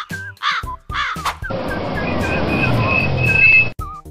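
Cartoon crow cawing three times in quick succession, followed by about two seconds of a small truck's engine running as it drives up, over light background music.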